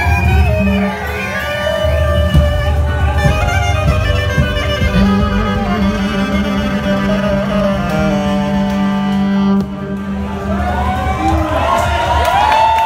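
Live Balkan band playing a horo dance tune: saxophone and wooden flute carrying the melody with violin, over guitar and drums.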